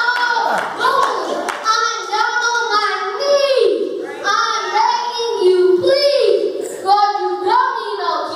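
A child rapping into a handheld microphone, the voice amplified through a PA, with a few hand claps among the lines.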